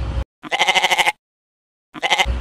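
A goat bleating: one fast-wavering bleat of under a second, then a second bleat starting near the end, each cut in and out sharply.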